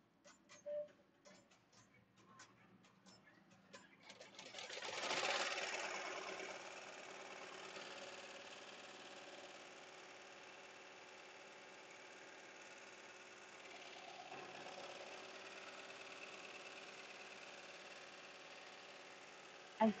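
A Melco 16-needle commercial embroidery machine comes on about four seconds in. It is loudest for its first second or two, then settles into steady stitching.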